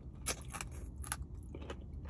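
A person chewing fried chicken with the mouth close to the microphone: a run of short crunches and mouth clicks.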